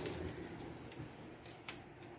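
Outdoor ambience of insects chirping in a fast, even, high-pitched pulse over a steady low hum, with a single click near the end.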